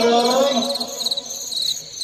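The end of a word chanted in a Hindi children's alphabet song, trailing off over the first second, with a high, rapid chirping pulse in the backing track that continues beneath.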